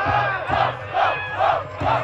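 Rap-battle crowd shouting together in rhythm, about two shouts a second, in reaction to a punchline.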